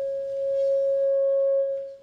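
Public-address microphone feedback: a loud, steady ringing tone with fainter higher tones above it, dying away near the end.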